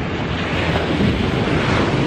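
Wind buffeting the camera microphone over the steady wash of sea surf.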